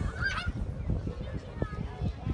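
A single short, harsh honking call about a quarter second in, over a low rumble.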